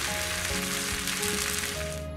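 Rice and toppings sizzling with a steady crackle in a paella pan over a gas flame as the rice crisps into okoge on the bottom, under soft background music.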